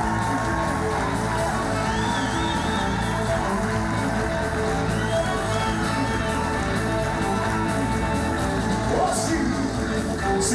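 Live band playing a rock and roll number with a steady beat, drums and bass prominent.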